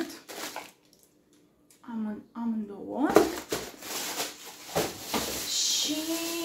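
Handling of shopping packaging, with rustling and light knocks as bags and a shoebox are moved about. A brief spoken sound comes in the middle.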